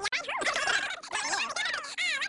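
Fast-forwarded speech: a voice sped up into a high-pitched, rapid chatter whose pitch slides up and down quickly.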